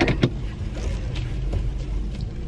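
A car's engine and tyres give a steady low rumble, heard from inside the cabin while it is driven slowly. A couple of sharp clicks come right at the start.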